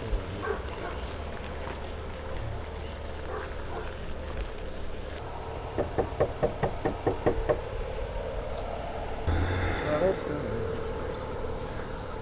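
Knuckles knocking on a house's front door: a quick, even series of about eight raps in under two seconds, about halfway through.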